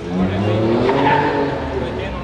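A car engine accelerating along the street, its pitch rising, loudest about a second in.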